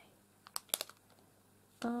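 A few light clicks, between about half a second and a second in, from handling a foil packet of small metal teacup charms.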